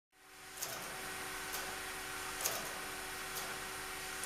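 Steady hum and hiss of the Colossus valve-computer replica's machine room, with faint ticks about once a second.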